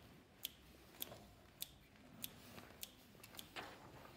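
Children's scissors being opened and snapped shut again and again, giving six faint, sharp clicks at an even pace of about one every half-second.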